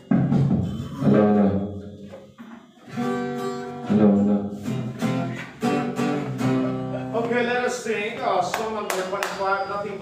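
Acoustic guitar strummed in a series of chords with short gaps between them. A person's voice comes in over the guitar in the last few seconds.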